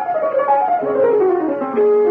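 Piano playing a descending run of notes, stepping steadily down in pitch.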